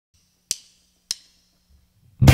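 Two sharp percussive clicks, a little over half a second apart, each with a brief ringing tail.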